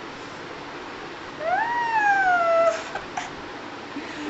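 A toddler's single long high-pitched squeal, rising and then gliding slowly down, about a second and a half in, followed by a couple of brief clicks.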